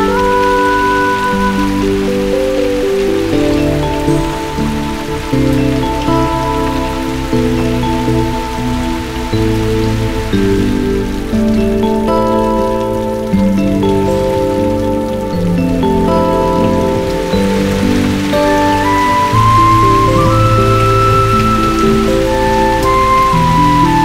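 Heavy rain falling steadily under a slow film-score melody of held notes. Deeper bass notes come in about halfway.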